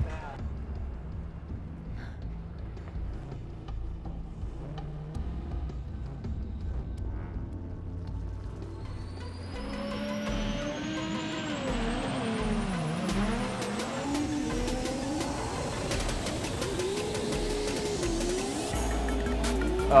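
Background music with a steady low beat. About ten seconds in, a rising sweep comes in and drift car engines rev up and down, with tyre noise, as two cars run a tandem drift.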